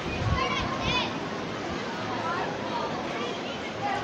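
Voices in the distance, with a child's high-pitched squeals in the first second, over steady outdoor background noise. There is a low thump near the start.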